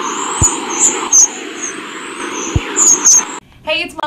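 Produced intro sound effect under the station's logo card: a loud, noisy sting with high chirps and two sharp clicks. It cuts off suddenly about three and a half seconds in, and a woman begins speaking.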